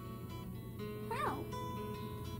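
Background music with one short rising-and-falling coo from a baby girl about a second in.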